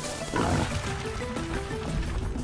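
Film soundtrack: a repeating pattern of short melodic notes over low drums, with a brief animal call from the film about half a second in.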